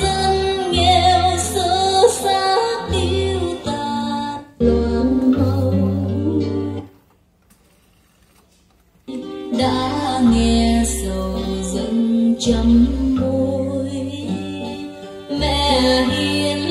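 Female vocal music with guitar playing back from a cassette on a Nakamichi cassette deck. About seven seconds in, the playback stops for about two seconds while the deck's buttons are pressed, then the music resumes.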